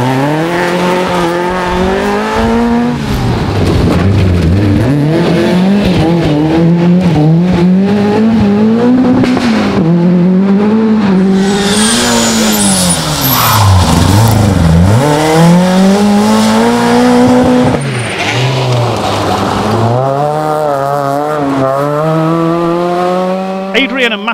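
Rally car engine, a Vauxhall Nova, revved hard on a special stage. The engine note climbs and drops repeatedly through gear changes and lifts, with a deep dip about two-thirds of the way through and a steady climb near the end.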